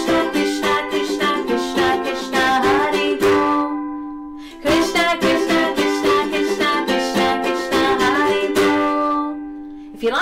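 Ukulele strummed fast with rapid chord strokes, in two runs of a few seconds each: the first fades out about four seconds in, and the second starts about half a second later and fades near the end.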